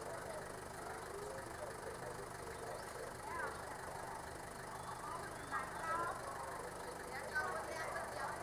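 Faint, indistinct voices of several people talking at a distance, over a low steady hum.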